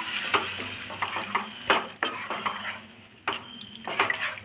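A spatula stirring and scraping a watery onion-tomato masala around a nonstick kadai, with several irregular knocks of the spatula against the pan.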